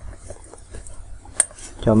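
Wristwatches being handled on a desk: faint small clicks and one sharper click about a second and a half in.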